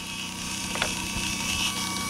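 Small 12-volt DC electric motor running on solar-panel power, a steady mechanical hum with a faint whine. A single short tick comes a little under a second in.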